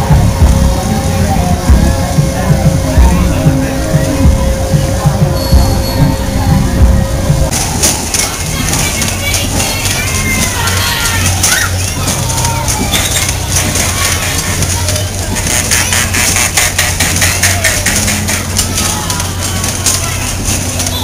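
Fairground ride noise: music and voices mixed with the rides' machinery. About seven seconds in the sound changes, and a rapid ticking runs under it.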